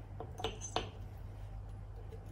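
Light clinks of a small glass beaker and metal tongs as the hot beaker is lifted off the tripod and set down on a ceramic tile: three small knocks within the first second, one with a short high ring.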